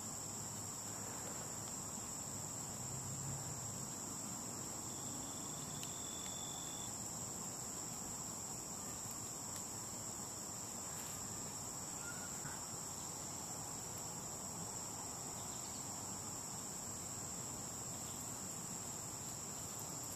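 Insects singing in a steady, high-pitched chorus.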